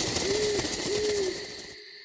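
An owl hooting twice, two low, slightly arched hoots, over a steady high hiss of night ambience; it all fades out near the end.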